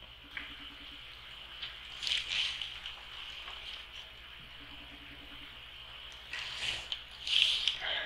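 Quiet handling noise as a diecast model car is taken out of its clear plastic display case: soft rustles and scrapes about two seconds in and again near the end, with a few small clicks, over a low steady hum.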